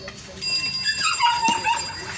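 A dog whines once about a second in, its high pitch falling and then held. Under it a large knife knocks on a wooden chopping block as fish is cut into chunks.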